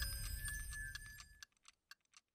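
Tail of a logo sting fading out: a run of quick ticks, about five a second, over a dying musical wash, trailing off to near silence near the end.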